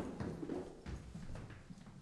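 Footsteps of hard-soled shoes on a wooden staircase, a quick series of knocking steps about two a second.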